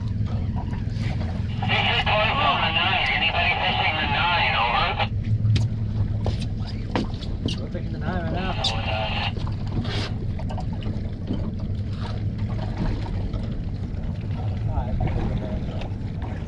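Steady low rumble of the boat's outboard motor idling, with wind and water. Twice, about two seconds in and again around eight seconds, a short burst of tinny voice chatter comes over the boat's marine radio.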